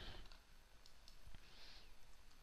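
A few faint, scattered clicks of a computer keyboard and mouse while text is typed into a field.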